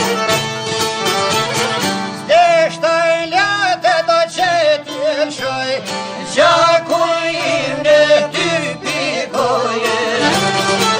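Albanian folk music: fiddle and plucked strings play a steady accompaniment. A high, wavering, heavily ornamented lead melody comes in about two seconds in, breaks off, and returns about six seconds in.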